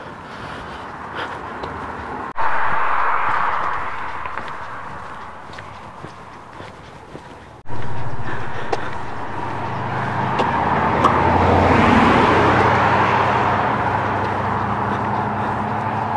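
A car going by: tyre and engine noise that swells to a peak and eases off, with a steady low engine hum in the second half.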